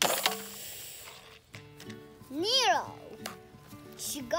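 Background music with a child's short vocal sound from pretend play: a single call that rises and then falls in pitch, about two and a half seconds in. A brief noisy burst comes right at the start.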